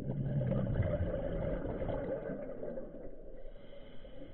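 A scuba regulator exhaling: a rumbling, gurgling rush of bubbles that starts suddenly and fades over two to three seconds, with a thinner hiss of inhalation around it.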